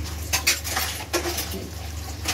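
A bare hand mixing chicken pieces in a yogurt marinade in a plastic bowl: several irregular wet squelching strokes.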